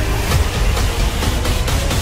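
Loud trailer soundtrack of music and action sound effects, with a heavy low rumble and a few sharp hits.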